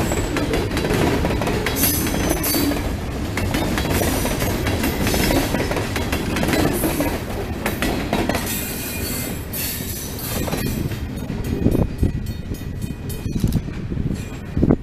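Covered salt hopper cars of a freight train rolling past close by, steel wheels and trucks rumbling and clattering on the rails. The sound thins out over the last few seconds as the cars move away.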